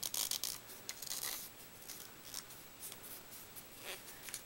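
Paper rustling and crinkling as a glued strip of paper is wrapped and pressed around a rolled-paper tube: a run of short, soft crackles, busiest in the first second or so.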